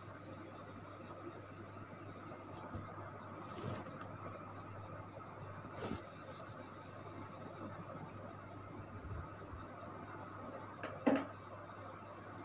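Samosas deep-frying in hot oil in a kadhai: a faint, steady sizzle, with a few light clicks.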